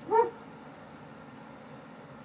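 Black Labrador gives a single short yip in its sleep, about a quarter-second long, rising then falling in pitch, over a faint steady hiss.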